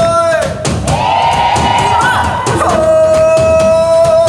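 Live band music: a drum kit keeps a steady beat under long held notes, with a male singer at the microphone. The held note drops out briefly near the start, a higher one is held for about a second and a half, then the lower note returns.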